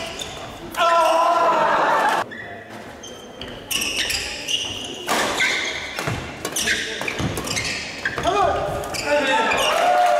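Doubles badminton rally on a wooden hall court: rackets strike the shuttlecock again and again in sharp, ringing hits. A loud pitched cry or squeal comes about a second in, and more bending squeals come near the end, all echoing in the large hall.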